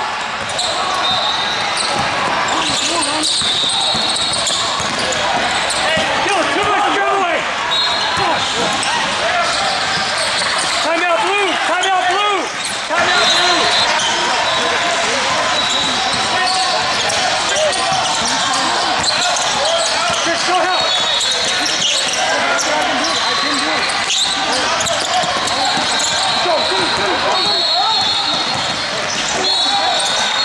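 Indoor basketball game sounds: a basketball bouncing and sneakers squeaking on the court, with high squeaks recurring throughout. Many indistinct voices of players and onlookers echo in a large hall.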